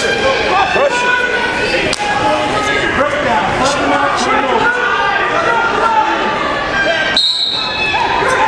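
Several voices shouting and calling out over one another in a large gym hall: spectators and coaches yelling to wrestlers on the mat. A few dull thuds are heard among them.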